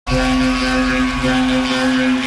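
A sustained electronic drone from the DJ's decks: a steady held tone over a fast, even low buzz, like a motor.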